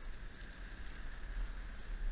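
Harley-Davidson Iron 1200's air-cooled V-twin running steadily while the motorcycle is ridden, a low rumble under wind noise on the microphone.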